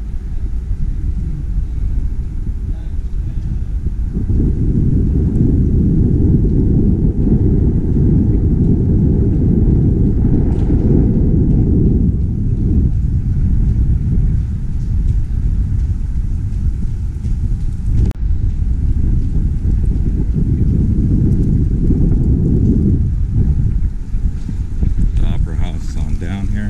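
Wind buffeting the camera's microphone, a steady low rumble that swells about four seconds in and eases briefly twice as the gusts come and go.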